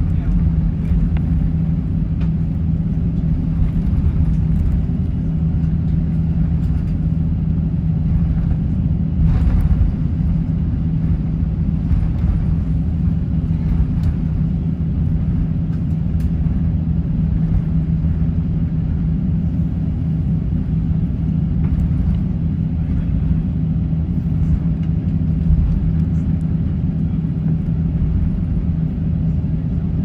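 Cabin noise of an Airbus A350-900 taxiing: a steady low rumble with a constant hum from the Rolls-Royce Trent XWB engines at idle and the cabin air system, with a few faint knocks.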